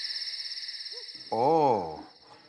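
Night ambience: insects chirping in a steady, high, fast-pulsing trill, with an owl hooting once, a long hoot that rises and then falls in pitch, starting about a second and a half in.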